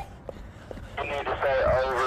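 A high-pitched, wavering voice sounding from about a second in, without clear words, after a moment of faint handling noise.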